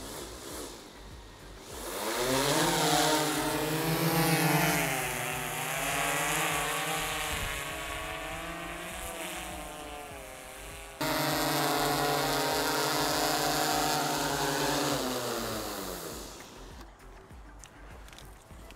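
DJI Matrice 210 quadcopter's four rotors spinning up about two seconds in, a loud buzzing hum whose pitch wavers as it lifts off and flies. After an abrupt cut the hum holds steady, then falls in pitch and dies away as the motors slow and stop on landing.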